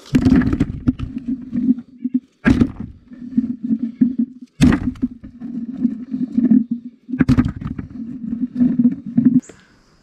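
Green-husked black walnuts dropped by the handful onto a camera lying in a bucket: four heavy thuds roughly two to two and a half seconds apart. Between the drops there is a continuous low rumble as the nuts roll and rub against the microphone, stopping shortly before the end.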